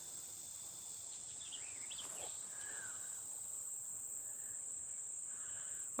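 Faint, steady high-pitched insect chorus from the field, one unbroken band with no pauses. A few faint short chirps come through about one to two seconds in.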